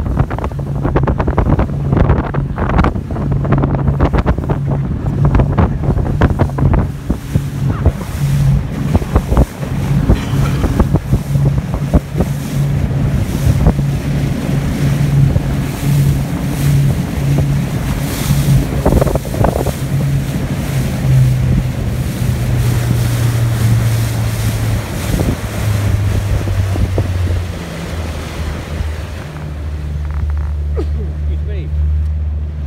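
Motorboat engine running under way, a steady hum under heavy wind buffeting on the microphone and splashes of water against the boat. Near the end the engine note drops lower.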